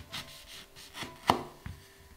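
Kitchen knife cutting a lemon in half on a wooden cutting board: a few short cutting strokes, then a sharp knock just past a second in as the blade meets the board, and a smaller knock shortly after.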